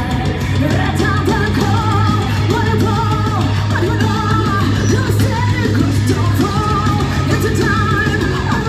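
Live heavy metal band playing: a female vocalist singing over electric guitar and a steady low bass note, loud and continuous.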